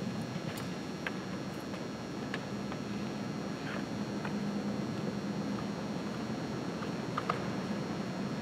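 Room tone: a steady low hum and hiss, with a few faint scattered clicks.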